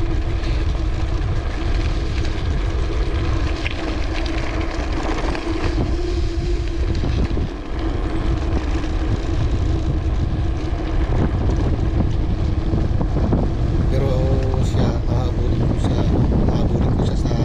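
Wind buffeting the microphone of a mountain bike descending a steep road, over the rumble of its tyres on ridged concrete. A steady hum runs underneath and fades near the end.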